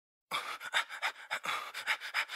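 Rapid panting breaths, a few short breathy puffs each second, starting a moment in.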